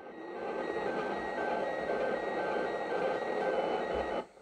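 Weak slow-scan television (SSTV) signal from the International Space Station's 145.800 MHz FM downlink, heard through the radio receiver: steady hiss with faint tones repeating about twice a second, growing louder over the first second. The signal is weak, not very strong for an ISS pass.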